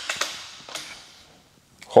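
A sharp knock at the start, then a few lighter knocks and rustling that fade out as a trophy is picked up and handled.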